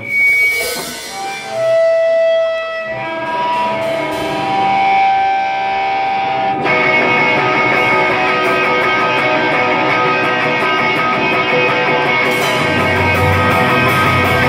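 Live rock band starting a song. Electric guitar notes ring out alone at first, the sound turns suddenly thicker and louder about halfway through, and drums and bass come in near the end.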